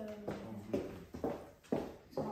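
Footsteps on a tiled floor, a few soft steps about half a second apart.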